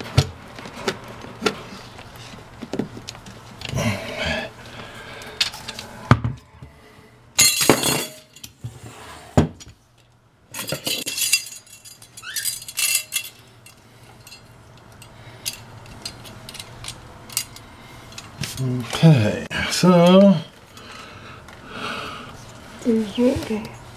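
Scattered knocks, clicks and metallic clinks from a fire extinguisher and its metal mounting bracket being handled against a wall. There are two short, sharper clatters, about eight and eleven seconds in.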